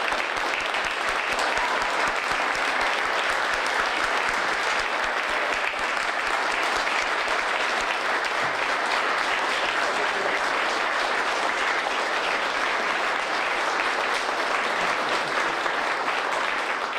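An audience applauding, a steady round of clapping from a roomful of people.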